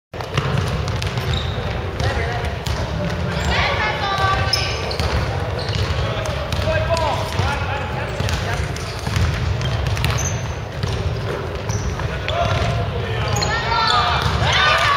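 Pickup basketball on a hardwood gym floor: the ball thuds as it is dribbled and sneakers give short squeaks, most around four seconds in and again near the end, with players' voices calling on court.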